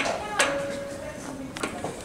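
Metal clanks from a homemade pipe roller as its hydraulic bottle jack is pumped. One clank, about half a second in, leaves a steady metallic ringing note for about a second.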